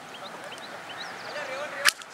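A single sharp whip crack near the end.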